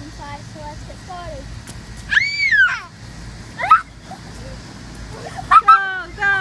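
Children shrieking and squealing with excitement in play: a long high-pitched squeal about two seconds in, a short shriek a second later, and a loud burst of shrieks near the end.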